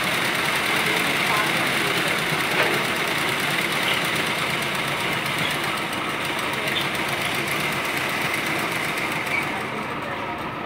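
Black straight-stitch sewing machine running steadily, stitching through layered fabric.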